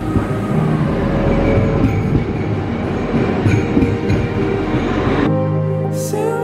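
Train running on rails: a loud, steady rush of noise with a heavy low end, which cuts off abruptly about five seconds in.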